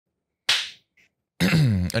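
A single sharp hand clap about half a second in, fading quickly in the room. A drawn-out spoken "A..." starts near the end.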